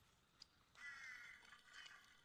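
Near silence outdoors, with a faint click about half a second in and one faint animal call, about half a second long, about a second in.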